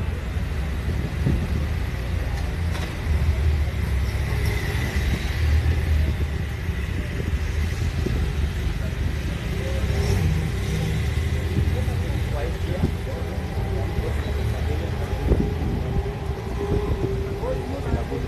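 Outdoor ambience of a steady low rumble, with indistinct voices talking in the background.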